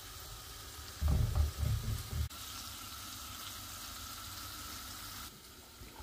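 Marinated chicken pieces sizzling steadily in a non-stick frying pan on a turned-up gas flame, with a few dull knocks about a second in. The sizzle cuts off shortly before the end.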